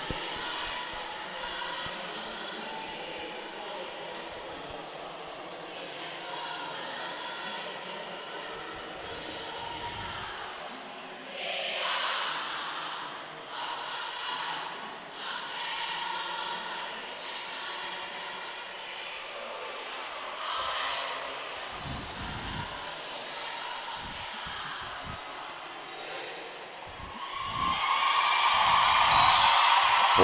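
Haka chanted and shouted in unison by a women's roller derby team, with a few louder shouted calls in the middle. Near the end the crowd breaks into loud cheering and applause.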